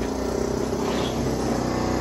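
A steady machine drone: a low, engine-like hum that runs on without a break.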